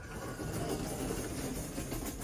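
Elevator car's stainless-steel sliding doors running closed on their door operator, a steady rumble and hiss.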